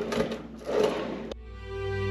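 A drawer on metal runners sliding with a rattle, twice. About a second and a half in, it cuts off abruptly and classical background music begins.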